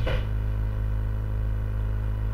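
Steady low electrical hum with a buzz, the background noise of the recording setup, unchanging throughout.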